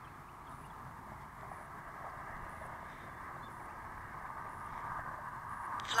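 Distant RC model MiG-17 jet's electric ducted fan in flight: a steady rushing whine that grows a little louder toward the end as the model comes closer.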